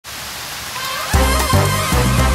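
Steady rain hiss, then music with low bass notes comes in sharply a little over a second in and plays over the rain.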